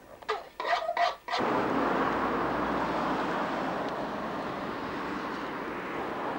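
A few brief voice sounds, then, about a second and a half in, a steady outdoor rushing noise starts abruptly and runs on evenly.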